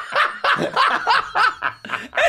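People laughing hard at the punchline of a joke, a rapid run of short laugh pulses, about four a second.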